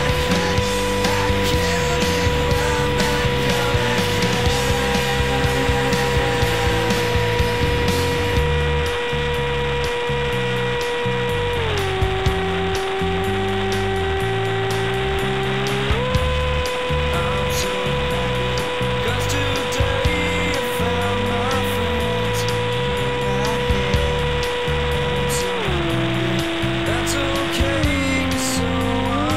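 Rock music with a steady beat and bass line, and a long held tone that drops in pitch and comes back up a few times.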